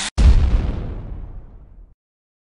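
Background music cuts off, and a moment later a deep boom sound effect hits and fades out over nearly two seconds.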